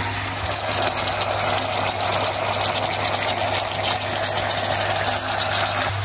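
Paneer cubes in a yogurt gravy sizzling and bubbling in a non-stick frying pan: a steady crackling hiss of fine pops, with a low steady hum underneath.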